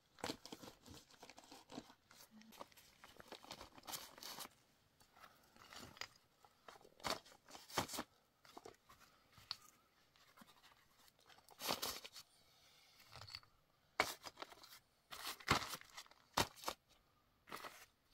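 Flat stones being handled and set down on a rock slab and gravel: irregular gritty scrapes and knocks of stone on stone, with quiet gaps between them and louder scrapes in the second half.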